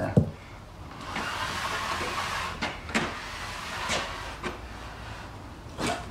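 Mud-coated paper drywall tape from a banjo taping tool being pulled out and rubbed by hand onto a wall joint: a rubbing hiss lasting about three seconds, with a few sharp clicks.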